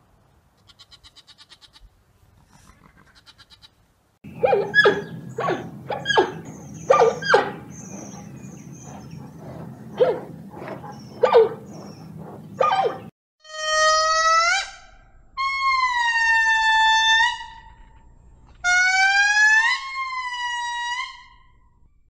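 Animal calls: a run of short, sharp calls, then three long calls of a second or two each, each rising in pitch.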